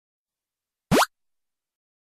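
A single short sound effect with a quick upward-sliding pitch, about a second in.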